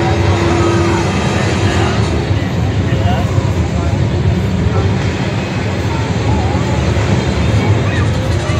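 The Transaurus car-eating robot dinosaur machine's engine running steadily with a heavy low rumble as it works on a junk car, with a crowd's voices rising and falling over it.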